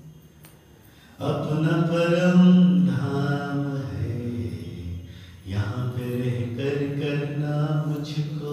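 A man's voice intoning slow, drawn-out meditation commentary over a microphone in a chant-like way. It is quiet for the first second, with a brief pause about five seconds in.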